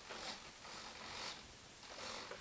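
Small hobby servos on a thrust-vectoring jet model driving the nozzles when the aileron stick is moved: two faint raspy whirs, a short one at the start and a longer one from about half a second in.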